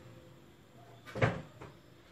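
A single sharp knock on the tabletop about a second in, followed by a lighter tap, as a hand works among the cookie plates.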